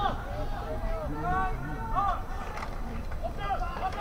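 Men's voices shouting on and beside an American football field as a play starts: repeated loud calls that carry but cannot be made out as words, over open-air stadium background noise.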